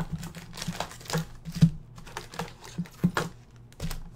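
Foil-wrapped trading card packs being handled and stacked: irregular crinkles of the wrappers and light clicks and taps as packs are set down on the table mat.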